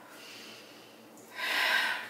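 A single audible breath from the yoga instructor, a short breathy rush about a second and a half in, taken as she comes back up out of a seated side stretch.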